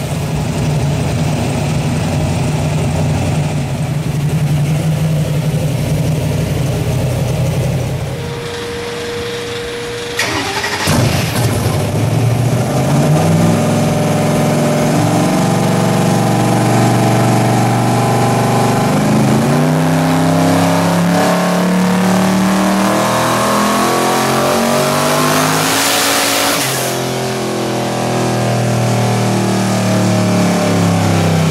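Twin-turbocharged V8 of a Pontiac Firebird Trans Am running on a chassis dyno. It idles steadily at first, then after a short lull climbs in rising steps, drops back about two-thirds through, and climbs again. A loud hiss comes near the end, after which the engine settles lower.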